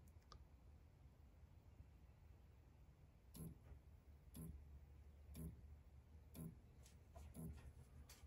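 Near silence over a low hum, with faint short ticks about once a second from about three seconds in. The ticks come as the Orion XTR 2500.1DZ car amplifier is driven with the burst test track into a 0.8-ohm load.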